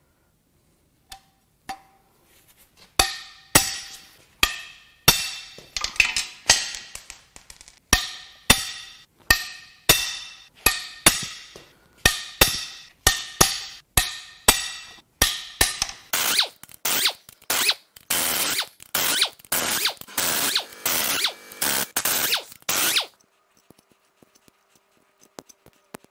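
A socket ratchet on a long extension clicking as it turns the head bolts out of a Cadillac Northstar V8 cylinder head. The sharp metallic clicks ring briefly and come in a long irregular run that grows faster and denser for the last several seconds before stopping.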